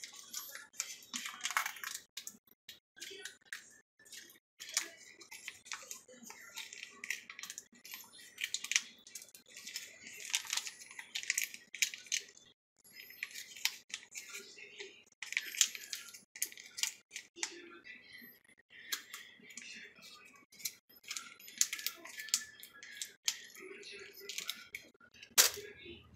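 Irregular crackling and crinkling clicks of a plastic sauce packet being squeezed and handled.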